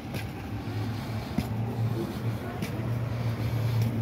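A steady low mechanical hum, like a motor or engine running at a constant speed, with a few faint ticks and rustles over it.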